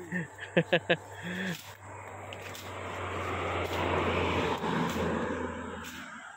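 A vehicle passing on the road, its noise swelling to a peak about four seconds in and then fading, after brief laughter at the start.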